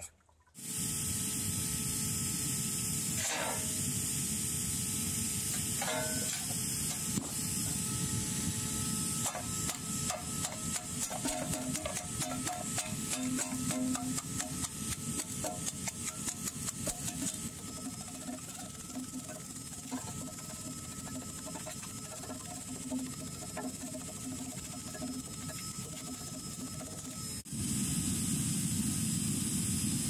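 A mallet tapping rapidly on dark lumps in a stainless steel tray, breaking them up, under a steady hiss. The taps come several a second for several seconds through the middle, then stop.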